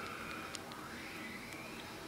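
Low, steady background hiss of room tone, with a faint click about half a second in.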